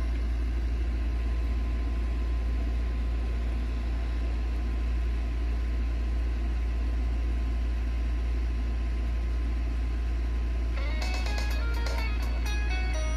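A steady low hum with faint background noise and no music; about eleven seconds in, music starts through the portable DVD player's speaker.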